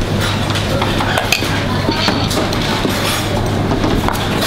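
Commercial kitchen sound: a steady low hum with scattered sharp clinks and knocks of dishes and utensils.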